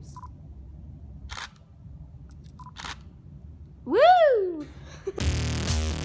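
Two short beeps and a couple of light clicks, then a loud whoop that rises and falls in pitch about four seconds in. Electronic music with a drum-machine beat starts about five seconds in.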